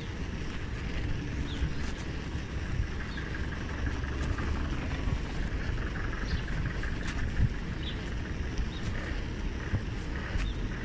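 Wind rumbling on the microphone of a camera carried on a moving bicycle, over a steady road and tyre noise, with a few sharp clicks and one louder knock a little past seven seconds.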